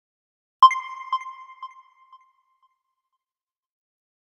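A bright electronic chime sound effect: a single ping about half a second in that repeats as three or four fading echoes, each about half a second apart, dying away within about a second and a half.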